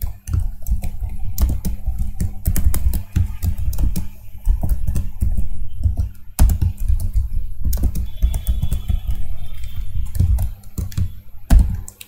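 Typing on a computer keyboard: irregular runs of quick keystrokes with short pauses between them.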